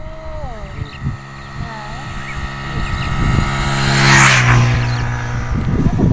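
A motor vehicle passing on the road: a steady engine hum builds up, is loudest with a rush of tyre and wind noise about four seconds in, then fades away.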